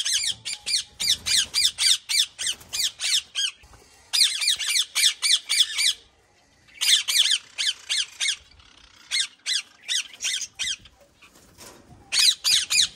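Ringneck parakeets squawking in fast runs of short, harsh calls, about five a second, broken by brief pauses.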